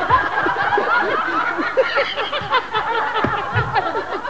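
A man laughing helplessly in a long string of short, rapid giggles, unable to stop.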